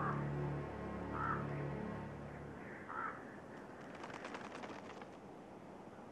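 Common ravens calling: three short croaks about a second and a half apart, over soft background music that fades out about halfway through.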